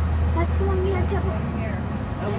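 Indistinct voices of people talking over a steady low hum, on a camcorder's own soundtrack.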